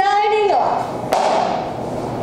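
A short vocal cry, then a single dull thud about a second in, as of a body landing on a gym crash mat, with a hall-like echo after it.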